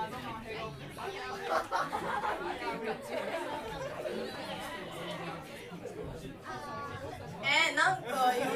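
Indistinct chatter of several people talking at once, with no instruments playing. One voice rises louder near the end.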